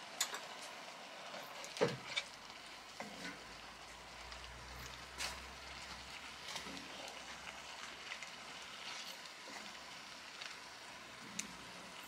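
Mushrooms and their soaking liquid cooking in a cast-iron skillet over a wood-fired rocket stove, with a faint steady sizzle, stirred with a wooden spatula. There are occasional scrapes and knocks of the spatula against the pan, the loudest about two seconds in.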